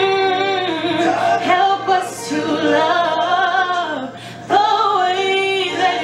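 A woman singing solo over an instrumental backing track. She holds drawn-out notes that bend in pitch, with a short break for breath about four seconds in before the next phrase.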